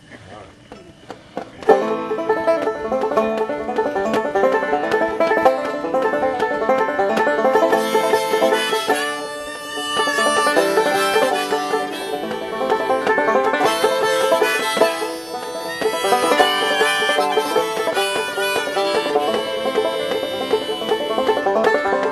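Live acoustic banjo playing a bluegrass-style folk tune's instrumental intro, starting suddenly about two seconds in and carrying on steadily with other acoustic strings.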